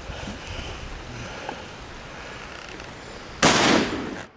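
A single loud rifle shot from a .270 Winchester hunting rifle about three and a half seconds in, fading over about half a second; before it only faint outdoor background.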